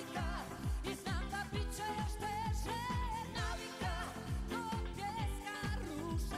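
A female singer performing a pop song live with a band, her held notes wavering with vibrato over a steady drum beat.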